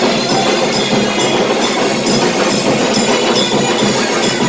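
Loud festival music with a steady percussive beat.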